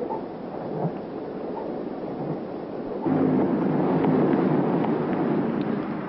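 Rain falling, with a low rumble that swells about three seconds in.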